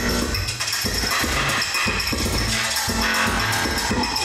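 Live electronic music from a performer's electronics: a dense, busy texture across high and low pitches, with repeated low bass pulses and short held tones that come and go.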